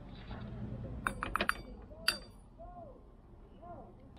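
A cluster of light clinks about a second in and one more a second later: a plate tapping against a small stainless-steel cup as spices are tipped into it. Faint short hooting calls are heard twice near the end.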